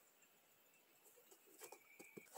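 Near silence: faint outdoor background, with a faint high chirp near the end.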